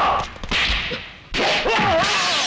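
Film fight sound effects: a short swishing whoosh about half a second in, then a sudden hit about a second and a half in, followed by a man's cry.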